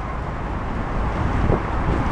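Steady low rumble of a moving bus, heard from its open top deck, with wind buffeting the microphone.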